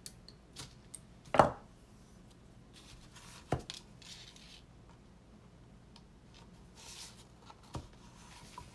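Sharp clicks and knocks with soft rustling between, as 19-gauge craft wire is handled and fitted to a wooden sign; the loudest knock comes about a second and a half in.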